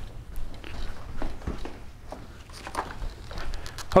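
Footsteps and a few faint scattered knocks and rustles as a boxed product is picked up and carried.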